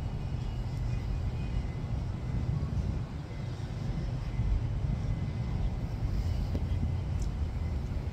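Outdoor city ambience: a steady low rumble of distant traffic and wind on the microphone, with a faint tick about seven seconds in.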